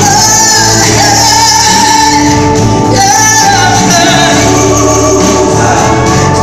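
Live gospel music, loud and amplified: a woman singing lead into a microphone, with backing singers and a band of drums, guitar and keyboard.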